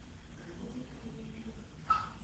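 Faint, indistinct voices over room noise, with one short, sharp sound near the end.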